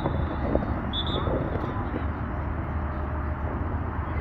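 A referee's whistle gives one short, shrill blast about a second in, over a steady outdoor background of low rumble and faint distant voices.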